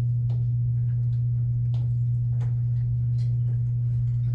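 A loud, steady low hum that holds one pitch without change, with a few faint clicks over it.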